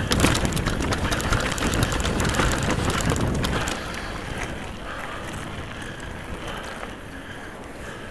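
Nukeproof Scalp downhill mountain bike rattling and clattering over a rocky gravel trail, with dense clicks of tyres, chain and frame. Nearly four seconds in, it rolls onto smooth tarmac and the sound drops to a quieter, even tyre rumble.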